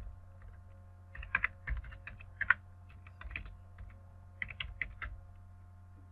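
Computer keyboard typing in three short bursts of keystrokes with pauses between, over a low steady hum.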